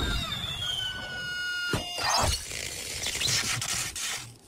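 Cartoon sound effects: a high squealing tone that glides down and then holds for about a second and a half. It is cut off by a sharp hit just under two seconds in, with a second hit about half a second later.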